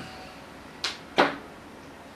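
Two sharp clicks about a third of a second apart, the second louder.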